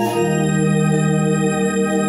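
Rohnes Onix Plus electronic home organ playing held chords, moving to a new chord with a deeper bass note just after the start and sustaining it.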